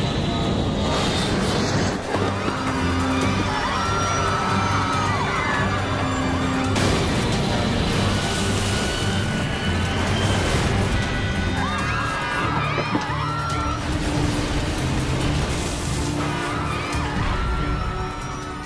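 Dramatic orchestral score over crash sound effects: a jet airliner's engine noise and crunching impacts as it ploughs off the runway through a fence and trees, with sudden hits about two and seven seconds in.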